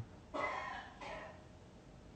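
A cough about half a second in, followed by a shorter second cough just after a second in.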